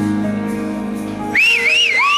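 Live rock band holding a soft sustained chord. About a second and a half in, a loud, shrill whistle from the crowd comes in, wavering up and down in pitch.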